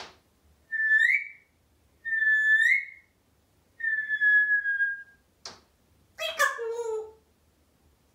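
African grey parrot whistling: two short whistles that rise at the end, then a longer, steadier whistle that sinks slightly. A single click follows, then a short falling call near the end.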